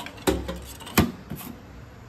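A few sharp knocks and clicks from a hand handling a conveyor's aluminium width rail, the loudest about a second in.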